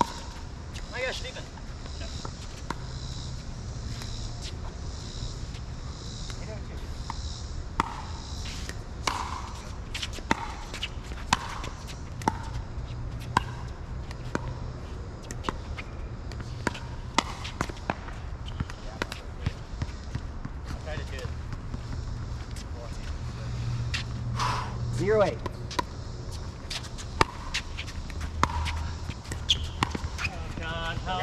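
Pickleball rally: a long series of sharp pops from paddles striking the hard plastic ball and the ball bouncing on the court, coming at uneven intervals.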